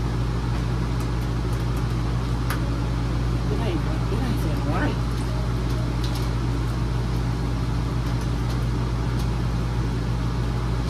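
A steady low machine hum, such as a fan or appliance running, with a few light clinks of a metal spoon against a stainless steel pot as ground beef is stirred.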